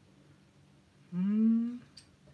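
A man's short closed-mouth "hmm", rising in pitch, about a second in and lasting under a second, with a faint click just after it.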